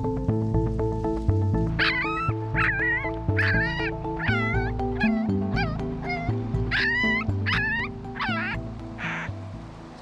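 Young unweaned puppies, about two weeks old, whimpering: about ten short, high cries that bend up and down in pitch, from about two seconds in until shortly before the end, over background music.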